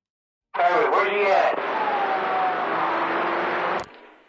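A CB radio transmission on channel 19 starts about half a second in. A brief garbled voice gives way to a static-filled carrier with a faint falling whistle, and the carrier cuts off with a click just before the end.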